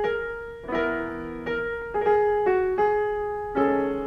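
Piano playing a slow, ringing passage of single notes and chords, about six struck in four seconds, each left to die away, transferred from a vinyl LP.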